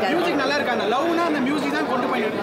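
A woman talking close to the microphone, with crowd chatter behind: speech only.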